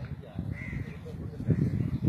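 A bird calling once, briefly, about half a second in, over a low rumbling noise.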